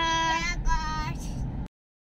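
A young child's high voice in long, drawn-out, sung-sounding notes over the steady low road rumble inside a moving car's cabin. The sound cuts off abruptly near the end.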